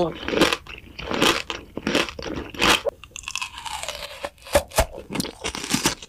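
Close-up ASMR crunching and biting of a hard, brittle edible prop: a string of sharp crunches at uneven intervals.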